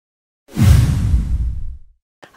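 Logo-reveal sound effect: a whoosh with a deep rumbling boom under it, starting suddenly about half a second in and fading away over the next second and a half.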